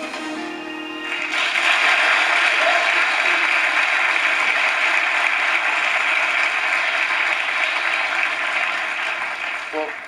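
Studio audience applauding, a steady even clatter that starts about a second in as a piece of music ends and holds until near the end. Heard through a television's speaker.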